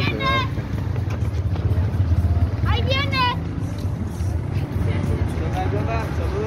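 Outdoor street ambience: a steady low rumble, with two short bursts of a person's voice, one right at the start and one about three seconds in.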